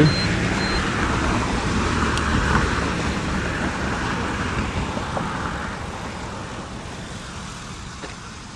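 Road traffic noise: a passing vehicle, loudest at the start and fading away steadily.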